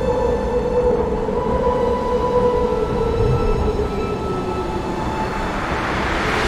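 Cinematic soundtrack drone: a steady deep rumble under a sustained tone that slowly sinks in pitch.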